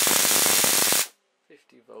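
High-voltage Jacob's ladder arc between wire horn electrodes, loud and crackling with a steady hum, fed at 50 volts through a 250-watt ballast. The arc cuts off suddenly about a second in, and a man's voice follows near the end.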